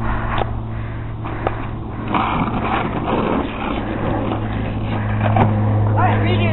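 Skateboard wheels rolling on asphalt. The rolling noise grows louder about two seconds in, with a couple of sharp clicks in the first two seconds and a steady low hum underneath.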